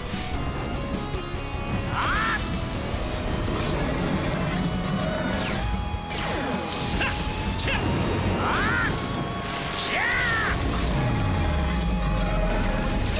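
Action-cartoon music with synthesized weapon-activation sound effects: several short swooping electronic glides over the score, and a deep falling sweep near the end as the power is unleashed.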